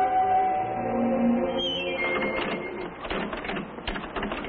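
A held musical chord fades out over the first two seconds. Then comes a run of rapid, irregular mechanical clicking and clatter.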